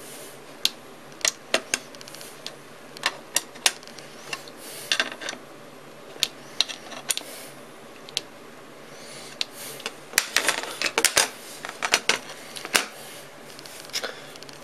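Small metal bolts, nuts and a hand tool clicking and tapping against a metal bracket as the hardware is fitted and tightened by hand. The sharp metallic clicks come irregularly, a few at a time, and grow denser about ten seconds in.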